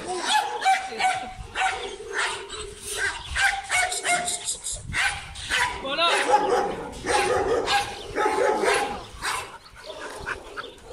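A pack of dogs barking and yipping, with many short barks overlapping one another. The barking thins out near the end.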